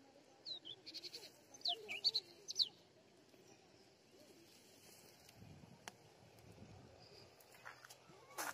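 A goat bleating faintly, with several short, high, sharply gliding chirps over it in the first three seconds.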